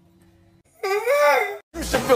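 A person's voice giving one drawn-out, wordless wail, under a second long, rising then falling in pitch. Near the end, loud electronic music with a heavy bass beat starts.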